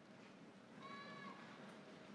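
Near silence, broken once about a second in by a brief, high-pitched tone lasting about half a second.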